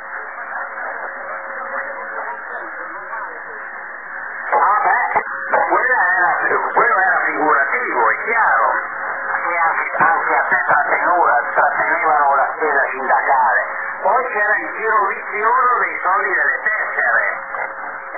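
Shortwave radio receiver audio from a voice contact on the Italian 45-metre band: a narrow, noisy radio sound with a faint steady whistle. About four and a half seconds in, a man's voice comes through much louder.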